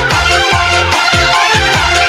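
Electronic dance-remix music from a live single-keyboard (orgen tunggal) band. A steady kick-drum beat, about four a second, runs under a high synth melody.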